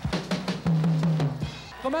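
Drum kit played in a fast run of strokes on the drums and bass drum, breaking off about one and a half seconds in.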